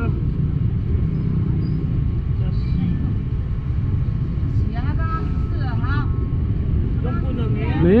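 Steady low rumbling background noise of a busy outdoor street market, with faint crowd voices midway; a man's voice starts right at the end.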